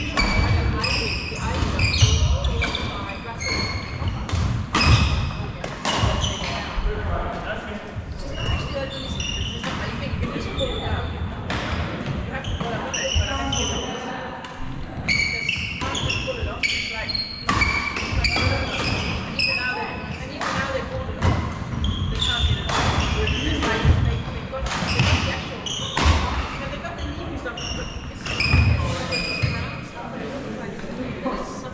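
Badminton doubles rally on a wooden sports-hall floor: sharp racket strikes on the shuttlecock, shoes squeaking and feet thudding on the boards, in a large echoing hall.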